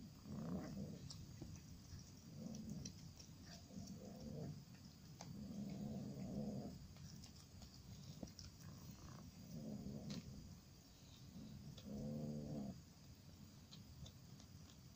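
Domestic cat growling low and repeatedly while eating a mouse: a series of growls, each half a second to a second long. It is guarding its kill.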